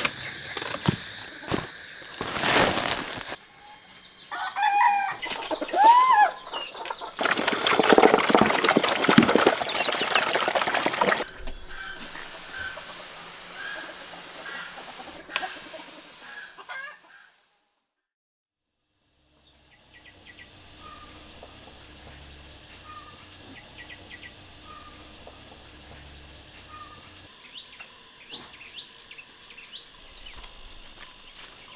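Chickens clucking and calling among loud rustling and knocks, followed after a brief silent gap by softer, evenly repeating high chirps.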